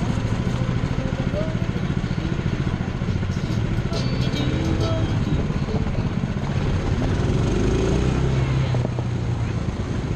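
An engine running steadily with an even pulsing rumble, with people's voices talking over it.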